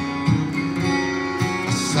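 Steel-string acoustic guitar played solo, strummed chords ringing on between sung lines, with a few fresh strokes along the way. A man's singing voice comes back in right at the end.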